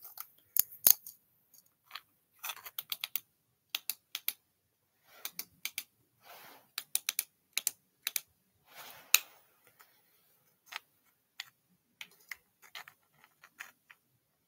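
Irregular sharp clicks and taps, in loose clusters with a few short rustles, of a metal flashlight and a rock being handled; the sharpest click comes about nine seconds in.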